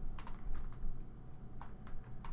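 About seven light, irregularly spaced clicks from a computer's input devices, keys or mouse buttons, over a faint low steady hum.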